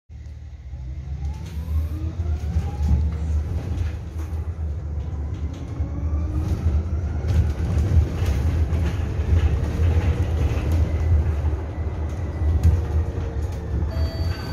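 Low-floor electric city bus heard from inside the cabin: its electric drive motor whines, rising in pitch over the first several seconds as the bus gathers speed, then holds steady. Underneath is a constant road rumble, with scattered small rattles and clicks from the cabin fittings.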